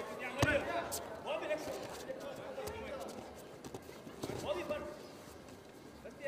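Judoka grappling on a tatami mat, with one sharp thud about half a second in and a few lighter knocks, under men's shouts.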